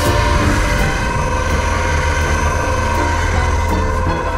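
A heavy machine's engine running steadily, mixed with background music.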